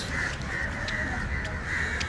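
Birds calling outdoors in short repeated calls, about two to three a second, over a steady low street rumble.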